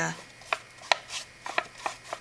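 Paintbrush strokes dabbing thin watered-down PVA glue onto construction paper, with about four light ticks and scratches as the bristles work the paper.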